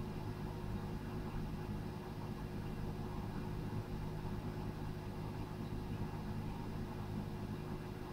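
Steady low machine hum that holds unchanged throughout.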